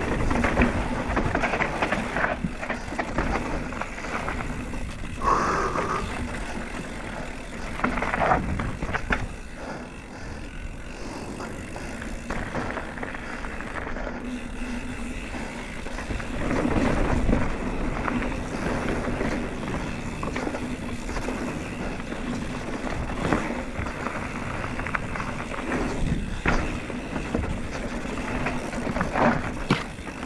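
Mountain bike descending a dry dirt forest trail at speed: continuous rattling, tyre noise on dirt and repeated knocks as it runs over roots and bumps. There is a brief squeal about five seconds in.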